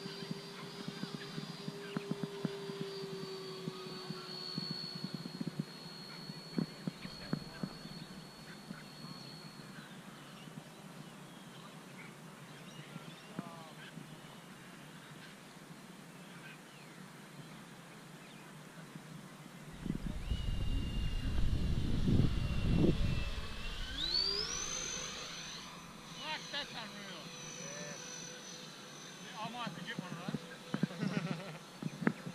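Twin 12-blade 70 mm electric ducted fans of an RC A-10 jet whining in flight: a steady high whine that sags slightly in pitch and fades out about ten seconds in. A loud low rumble on the microphone comes about twenty seconds in, and then the fan whine returns, rising sharply in pitch and holding high.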